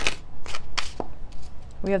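A deck of tarot cards being shuffled by hand: a quick run of sharp card snaps, about four a second, that thins out after a second.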